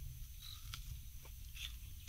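A person biting into and chewing a bilimbi (mimbro) fruit, with a few faint, short crunching clicks.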